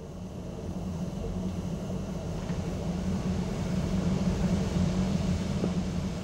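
Steam locomotive sound: a steady low rumble with a faint hiss, growing gradually louder over the first few seconds.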